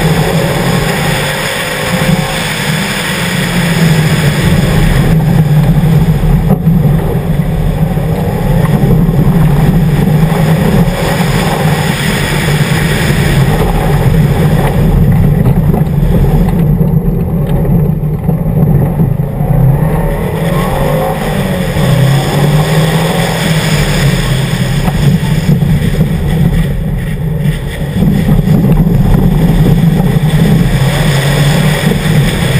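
2011 Subaru WRX's turbocharged flat-four engine pulling hard on a gravel rally course, its pitch rising and falling as the driver works the revs through the corners, over a steady rush of gravel and road noise. The gravel hiss thins for a few seconds past the middle while the engine keeps running.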